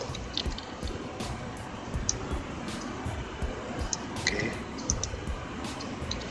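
Scattered computer mouse clicks over a faint steady background hum.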